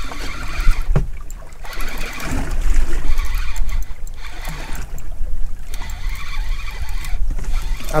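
Spinning reel being wound in spells of about a second, with short pauses, while a hooked fish is played on a bent rod, over a steady rumble of wind on the microphone and lapping water.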